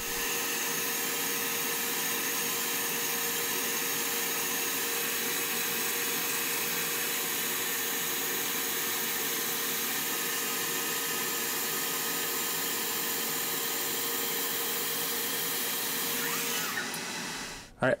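Diode laser engraver running while it cuts plywood parts: a steady whirring hiss of fans and moving air, with a faint steady hum, that drops away near the end.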